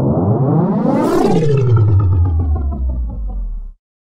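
Whoosh sound effect for an animated logo: a sweep that rises in pitch for about a second, then falls into a low rumble and cuts off sharply shortly before the end.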